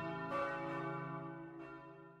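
Bell tones ringing and dying away, with a fresh strike about half a second in and another near the end, at the close of the opening theme music.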